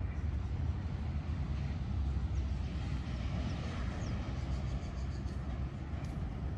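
Outdoor ambience: a steady low rumble with a few faint high chirps over it.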